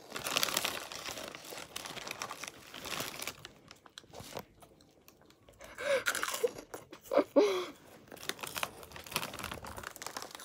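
Close-up crunching and chewing of Cheetos snacks, most heavily in the first few seconds, with a few short hums from a full mouth partway through.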